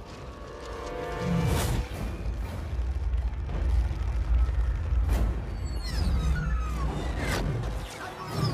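Dramatic film score swelling over a deep, steady rumble, with sharp booming hits about one and a half, five and seven seconds in.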